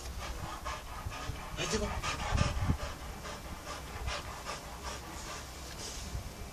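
Pit bull panting in a steady run of quick breaths, with a brief louder patch a little over two seconds in.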